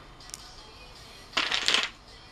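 Glass nail polish bottles being handled: a faint click near the start, then a short rattling, clinking burst about a second and a half in as a bottle is put down and the next one picked up.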